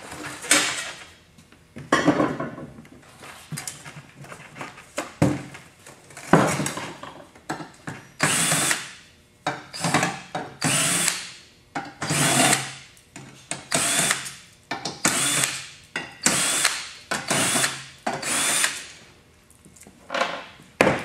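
Cordless drill with a nut-driver bit backing sheet-metal screws out of a steel forge housing, run in a quick series of short bursts in the second half. Before that there is a few seconds of knocking and clatter from the sheet-metal parts being handled.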